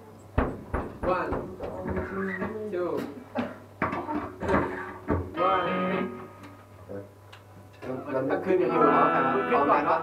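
Band members talking between songs, with scattered electric guitar and bass notes and a series of sharp knocks and clicks in the first half. Near the end the voices and guitar get louder together.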